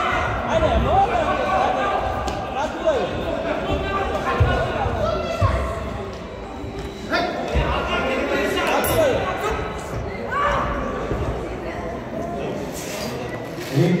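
Voices calling and shouting in a large, echoing sports hall around a boxing ring, with dull thuds from the boxers' gloves and feet on the ring canvas a few times.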